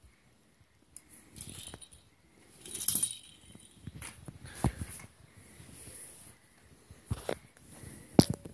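A baby rummaging in a soft fabric bag of toys: rustling and handling noise, with a few sharp clicks of toys knocking together.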